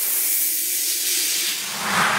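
A loud hissing rush of noise that sweeps downward in pitch and fades out: a whoosh transition effect between two songs in a radio broadcast.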